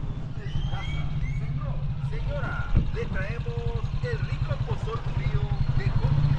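A steady low engine rumble with a fast, even pulse, like a vehicle idling close by, with faint voices over it.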